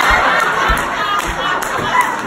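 Comedy club audience laughing hard and cheering, many voices at once, loud and sustained, with a few low thuds in the first second or so.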